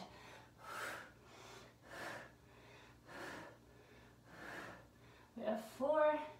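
A woman breathing hard from exertion while holding a deep squat and pulsing in it: four audible breaths, about one every second and a bit. A spoken word begins near the end.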